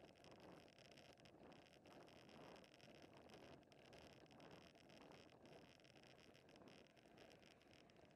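Faint, steady rush of wind on the microphone and tyre noise from a bicycle rolling along a paved road.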